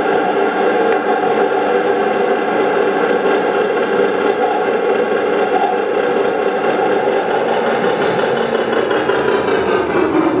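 Electroacoustic fixed-media piece played back over loudspeakers: a loud, dense, steady drone of many layered held tones. Near the end a brief high falling swish cuts across it.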